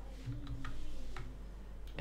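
A few faint, irregularly spaced computer keyboard clicks as text is deleted and edited in a code editor.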